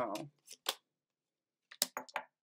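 Tarot cards being handled: short crisp snaps and flicks of card stock, two about half a second in and a quick run of three or four near the end.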